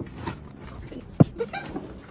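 A plate being lifted off a steel mixing bowl, with quiet handling and a single sharp knock of plate against bowl about a second in.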